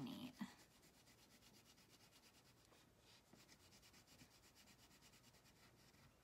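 Faint scratchy rubbing of a wax crayon scribbling back and forth on paper, in a steady run of quick, even strokes as an area is coloured in.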